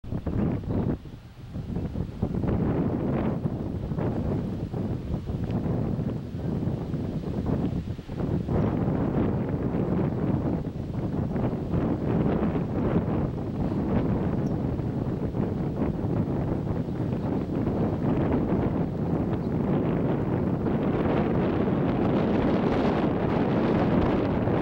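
Wind buffeting the camcorder's microphone, a steady rumbling rush with gusty swells throughout.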